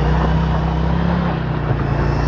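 Motorcycle engine running at a steady pitch while the rear wheel spins on loose gravel, throwing up dirt.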